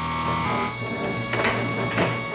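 Background music from the TV show's score, with held notes and a sharper accent about one and a half seconds in.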